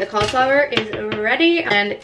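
A woman's voice speaking, with a few light clinks from a metal baking sheet.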